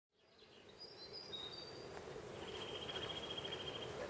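Small wild birds calling in the background: a few short high whistles in the first second and a half, then a rapid high trill held for about a second and a half, over a faint steady outdoor hum that fades in at the very start.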